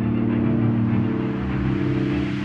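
Background music: a low, steady droning bed with a noise sweep slowly rising in pitch over it.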